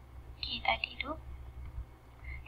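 Brief, indistinct speech, too faint to make out, over a steady low hum.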